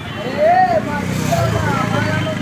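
Busy street ambience: people's voices talking, the loudest about half a second in, over the low steady running of a vehicle engine that grows a little louder from about a second in.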